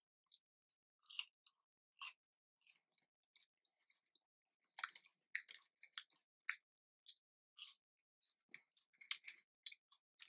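Faint chewing of fast-food french fries close to the microphone: short, irregular crunches and mouth clicks, busiest in the second half.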